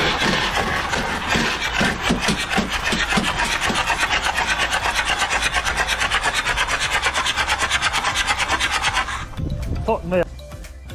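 An Audi's flood-swamped engine turning over on the starter with water spurting up out of it: an even, rhythmic rasping hiss of about eight pulses a second that stops about nine seconds in, the sound of water being forced out of the engine.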